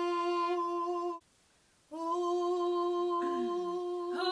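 Women humming one held note in unison, matching the pitch just given by a pitch pipe. The hum breaks off abruptly about a second in, comes back on the same note after a short silence, and a fainter voice slides downward near the end.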